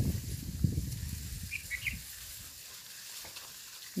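Faint outdoor ambience: a low rumble over the first two seconds, a steady hiss throughout, and a few short, high chirps about a second and a half in.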